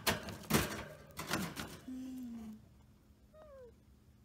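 Irregular rustling, clicking and rattling around a wire rabbit cage in the first second and a half, then a brief low hum and, near the end, a short faint falling squeak.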